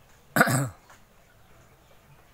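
A man coughs once, briefly, a little after the start.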